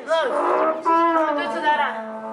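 A person's voice making a long, loud, wordless drawn-out call. Its pitch bends during the first second and is then held steady.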